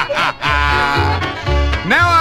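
Country band playing an instrumental break between sung verses: a held lead instrument line over bass notes about twice a second.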